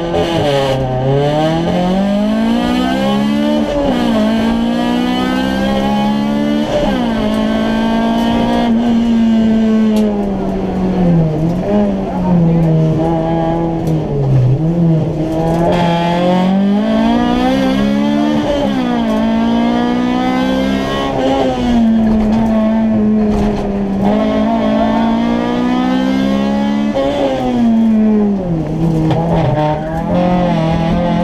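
Rally car engine heard from inside the cabin, driven hard on a stage: the revs climb and drop again and again as the driver accelerates, shifts and brakes.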